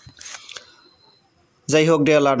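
A pause holding only faint clicks and hiss, then a man's voice starts speaking near the end.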